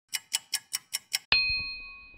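Six quick clock ticks, about five a second, then a single bright bell-like ding that rings on and fades away, a clock-and-chime sound effect.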